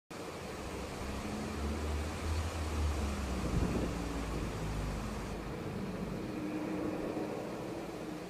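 Low, steady outdoor background rumble with hiss. The hiss drops away about five seconds in.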